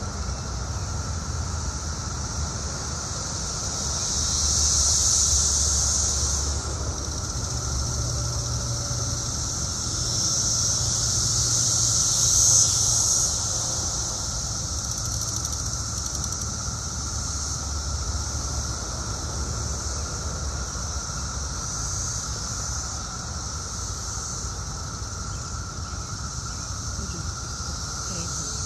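A dense chorus of periodical cicadas buzzing from many insects in the bushes: a steady drone with a higher, hissing buzz that swells loudly twice, about four and about ten seconds in, then eases back.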